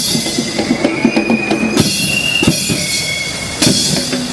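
An Eastern cadet band's drums and cymbals playing a rhythmic pattern. Several cymbal crashes ring on over the drumming, about three times.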